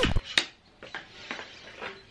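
Background music cuts off with a falling note at the start, then a sharp click. A few faint, short scrubbing strokes follow: a small hand brush working over a window screen.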